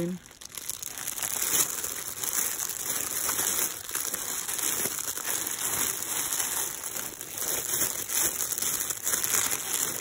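Clear plastic bags around packaged T-shirts crinkling and rustling as the shirts are flipped through by hand, an irregular crackle that keeps going.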